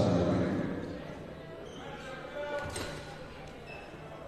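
Basketball bouncing on a hardwood court as the free-throw shooter dribbles before his second attempt. There is a heavier bounce at the start and a sharp knock a little under three seconds in.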